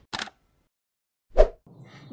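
Sound effects for an animated logo intro: a brief blip just after the start, then a single sharp pop with a low thud about a second and a half in.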